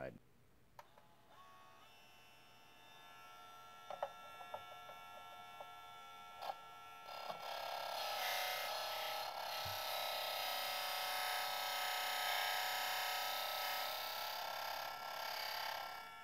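Work Sharp E2 electric sharpener's motor running with a faint, steady whine while scissor blades are drawn across its spinning abrasive disc, with a few light clicks in the first half. About halfway through the sound grows louder and fuller as a blade grinds against the disc, then drops away just before the end.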